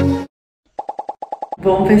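Background music with plucked notes stops suddenly, followed by a brief dead silence and then a quick run of about nine short, evenly spaced pops, an edited-in sound effect.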